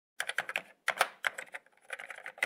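Typing sound effect for a title card: quick, uneven key clicks in small clusters, as the text is typed out.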